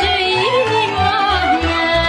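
Romanian folk song from Oltenia: a woman singing with wavering, ornamented vibrato over a folk orchestra that keeps a steady bass beat.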